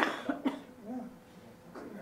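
A person coughing: two short coughs about half a second apart.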